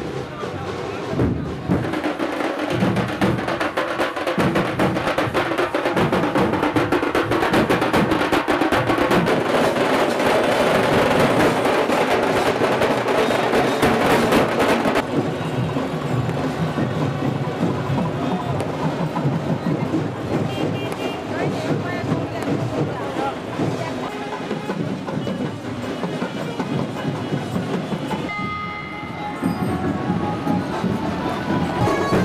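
Dhol and tasha drums playing a fast, dense beat, with voices of a crowd mixed in. About halfway through, the sound changes abruptly to a duller, softer mix of music.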